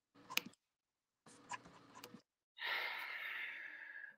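A man's audible breath, drawn in for about a second and a half near the end, after a couple of faint clicks.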